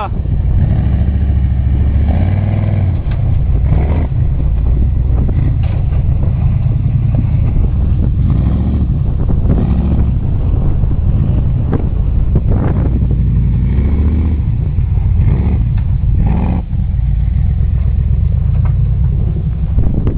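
Off-road buggy engine running continuously with a deep rumble, its pitch rising and falling a few times as the buggy accelerates and eases off over sand.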